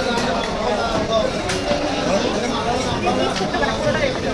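Several people talking and chattering in a busy hall, with a few light knocks.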